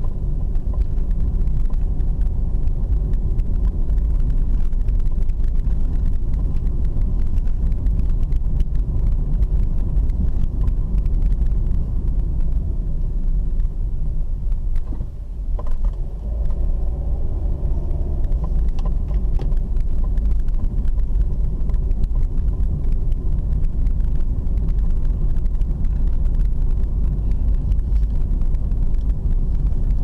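Car driving, heard from inside the cabin: a steady low rumble of engine and road noise. It eases briefly about halfway through.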